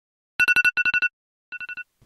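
Wake-up alarm beeping: a high electronic tone in quick groups of four beeps, two loud groups and then a fainter group about a second and a half in.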